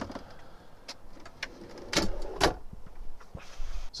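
Metal equipment-cabinet hardware being handled: a sharp click, then scattered small clicks and two louder clunks about two seconds in, as the hinged command board on its gas struts is moved.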